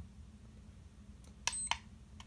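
A Tenergy TB6B hobby battery charger gives one short, high-pitched beep as its Enter/Start button is pressed, about one and a half seconds in. The beep comes with a light click; otherwise there is only low room tone.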